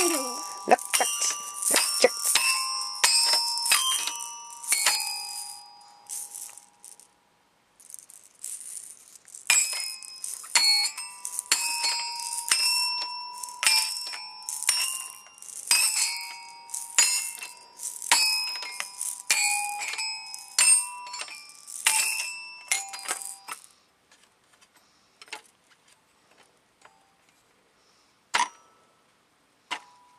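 Toy metal-bar xylophone struck by a child with a mallet: irregular, unrhythmic strikes, each bar ringing briefly. There is a pause of a few seconds early on; the playing stops about 24 seconds in, leaving only a few faint taps and one more strike near the end.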